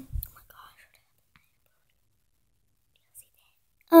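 Near silence: room tone, after a brief low thump and faint whispery rustle in the first second, with one small click about three seconds in.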